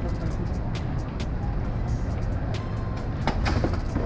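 Steady low rumble of city street traffic, with scattered faint clicks.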